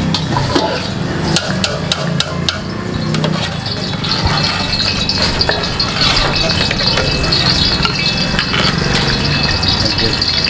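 A steel ladle stirring and scraping in a steel pot of thin gravy, with several sharp metal clinks in the first couple of seconds. Underneath runs a steady frying sizzle, as from oil on a hot griddle, which grows louder from about four seconds in.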